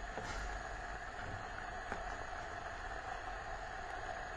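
Steady hiss of a pot of water at a rolling boil on the stovetop, with a faint click or two.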